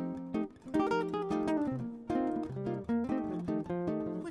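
Background music: acoustic guitar playing plucked notes and chords.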